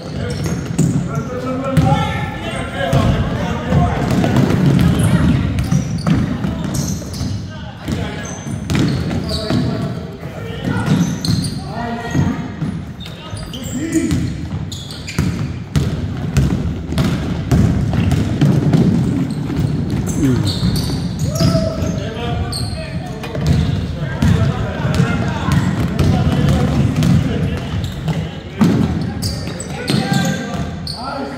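Basketball game sounds in an echoing gym: a ball bouncing on the hardwood court as it is dribbled, under indistinct shouts and chatter from players and spectators.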